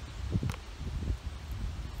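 Wind noise on the microphone: a low, uneven rumble, with one faint click about half a second in.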